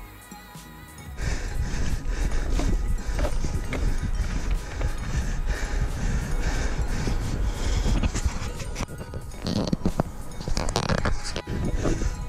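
Background music for about a second, then loud rumbling wind and handling noise with bumps and rattles from a camera carried by a rider on a unicycle over a rough tunnel floor and dirt trail.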